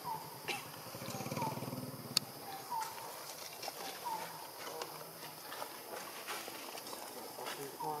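Macaques calling: a low, buzzy grunting for about the first two seconds, and short falling squeaks that recur every second or so, with a few sharp clicks between them.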